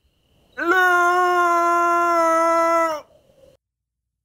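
A man's mock elk call through cupped hands: one long held 'looo'. It scoops up into a steady pitch about half a second in and cuts off abruptly about three seconds in.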